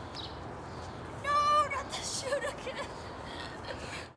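A person gives a short, loud, high-pitched squeal about a second in, holding the pitch and then dropping it. A few brief, quieter vocal sounds follow, over steady outdoor background noise.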